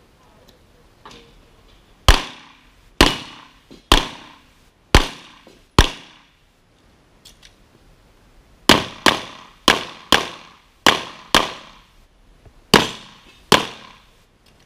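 Pistol shots during a practical shooting stage. Thirteen shots in all: five spaced about a second apart, a pause of about three seconds, then eight quicker shots, mostly in pairs.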